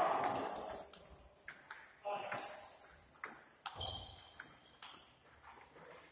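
A table tennis rally: the ball clicks in quick, uneven succession as it strikes the rackets and the table, with the loudest hit about two and a half seconds in followed by a brief high ring.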